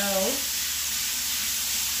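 Ground lamb frying in a skillet, a steady sizzle; the heat is turned up too high and the fat is spattering.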